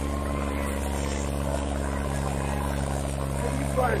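Turbocharged diesel engine of a John Deere 5310 tractor running hard and steady under load as it drags a disc harrow, its exhaust smoking heavily. A person shouts briefly near the end.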